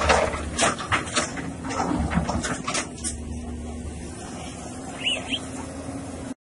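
Case wheeled excavator's diesel engine running steadily while its bucket breaks down breeze-block walls, with blocks and rubble crashing and clattering in quick irregular knocks through the first three seconds. A couple of short high chirps come near the end.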